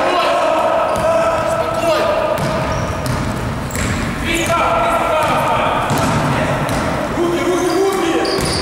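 Basketball being dribbled on a gym floor during play, with players' voices and long held shouts echoing in the sports hall.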